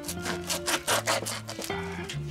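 A knife sawing and scraping at a dried smoked fish in quick repeated strokes, over background music.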